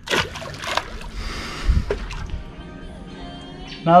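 A released mangrove jack splashing into the creek water, a short burst of splashing in the first second.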